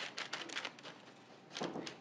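Dry beans used as pie weights clicking and rattling against one another as hands push them across parchment paper in a tart shell. A quick flurry of small clicks at the start thins out, with a few more near the end.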